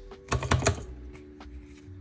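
A quick cluster of sharp clicking taps about half a second in, from long fingernails knocking against hard objects on the work surface.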